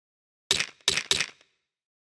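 A short, bright electronic percussion sample ('MA GreenDream Perc') auditioned three times in a DAW sampler: one hit about half a second in, then two quick ones around a second in. Each is a sharp, click-like strike that dies away fast, with dead silence between.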